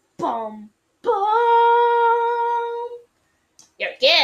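A child's voice: a short falling vocal sound, then about a second in one steady hummed note held for about two seconds.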